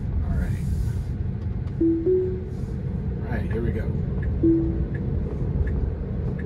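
Steady low road and tyre rumble inside a Tesla Model 3's cabin while driving. About two seconds in comes a short two-note chime rising in pitch, the car's signal that FSD Beta/Autopilot has engaged. A single short tone follows near the five-second mark.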